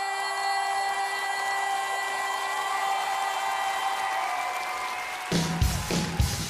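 Live pop-rock song: a soft sustained chord with a woman's voice gliding over it, then the full band, drums, bass and electric guitar, comes in together loudly about five seconds in.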